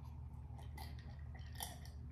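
Faint mouth sounds of sipping and swallowing soda: a few soft, wet clicks over a low steady hum.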